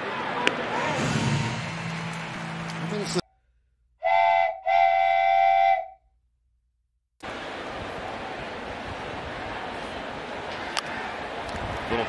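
Two loud whistle blasts, a short one and then a longer one, set between sudden gaps of silence, with stadium crowd noise before and after.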